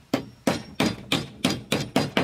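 Metal-headed hammer driving a small wooden peg into the joint of a wooden furniture frame, with about seven quick, even blows, roughly three a second, each with a short ring.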